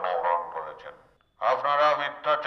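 A man's voice calling through a handheld megaphone, breaking off about a second in and starting again shortly before the end.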